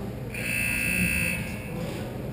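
Rink scoreboard buzzer sounding once: a steady, high-pitched electronic tone that starts about a third of a second in and lasts about a second.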